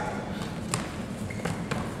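Two wrestlers scuffling and hitting a wrestling mat during a takedown, with about three sharp thuds, the first under a second in and two close together near the end.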